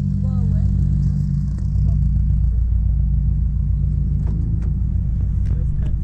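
Car engine idling with a steady, deep exhaust rumble, a few light clicks in the last couple of seconds.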